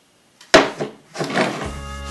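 A glass jar set down hard on a wooden table: one sharp thunk about half a second in, with a smaller knock just after. Music with a steady bass line starts about a second in.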